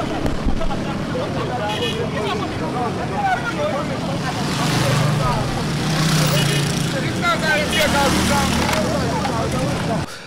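Busy street noise: several people's voices talking and calling at a distance over motorcycle engines running past, the engine hum strongest about halfway through.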